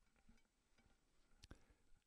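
Near silence, with one faint click about a second and a half in.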